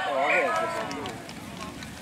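A raised voice calling out across an outdoor rugby pitch in the first second, its pitch bending up and down, then dying away into faint open-air background noise.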